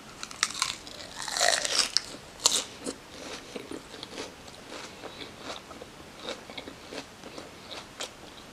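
Crunchy bites into a crisp iceberg lettuce wrap filled with chicken. It is chewed with a run of crisp crunches that are loudest in the first three seconds and then go on as softer, smaller crackles.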